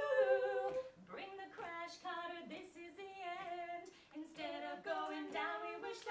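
A group of mostly female voices singing a cappella, a run of held notes with short breaks and no clear words.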